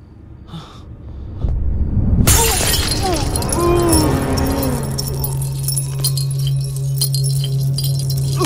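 A glass bottle smashing with a sudden loud crash about two seconds in, followed by scattered clinks of falling glass. Film score music runs underneath: a low swelling rumble before the crash and a steady low drone after it.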